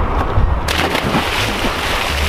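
A person belly-flopping into lake water: a big splash hits about two-thirds of a second in, followed by a second or so of rushing, churning water.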